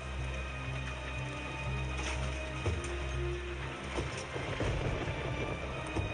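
Film soundtrack: a low, sustained music drone with scattered clicks, turning to a rattling, crackling noise in the second half.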